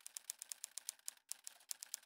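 Typing sound effect: a rapid run of sharp key clicks, about nine a second, with a brief break a little over a second in, keeping pace with on-screen text typing out.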